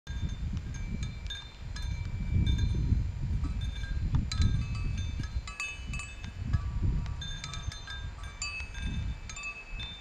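Homemade wind chime of hard drive platters, with a hard drive read/write arm and RAM sticks hanging among them, clinking irregularly several times a second. Each strike rings on briefly at several high, bell-like pitches, over a low gusty rumble.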